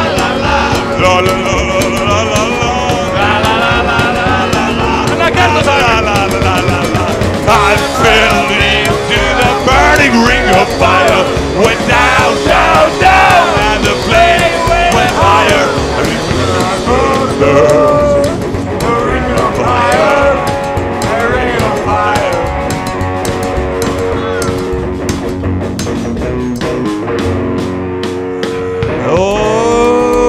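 Rock band playing live: electric guitar over bass and a steady drum beat, with bending lead lines through the middle of the passage. The bass drops away briefly near the end.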